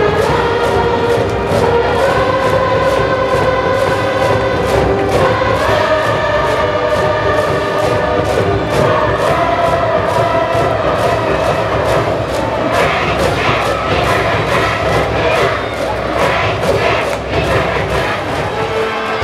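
High-school baseball cheering section: a brass band playing a cheer tune over a steady drum beat, with a block of students singing and chanting along.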